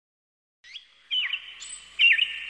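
Silence, then about half a second in birds start chirping. Short whistled calls with quick up-and-down pitch glides follow one another and grow louder about a second in.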